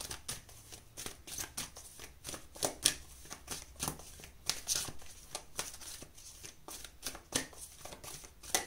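A deck of oracle cards being shuffled by hand: a continuous run of irregular, sharp card flicks and slaps, several a second.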